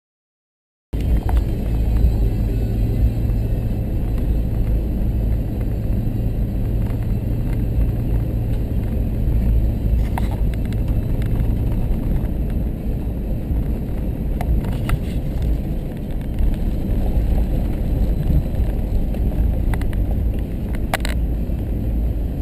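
Engine and road noise inside a moving vehicle's cab on a dirt road: a steady low rumble with a constant low hum, and now and then a brief sharp click. It starts about a second in, after a moment of silence.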